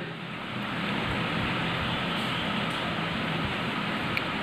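A ballpoint pen writing a word on lined notebook paper, faint under a steady background noise with a low hum.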